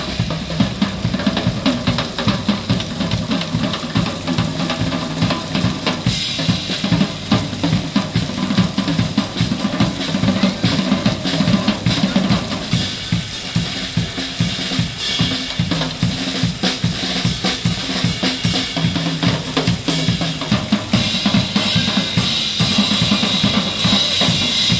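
Acoustic drum kit played in a busy, steady groove of bass drum, snare and cymbals, with an electric bass line underneath.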